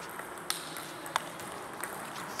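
Table tennis ball clicking sharply off paddles and the table during a rally: two crisp hits about two-thirds of a second apart, then a fainter one near the end.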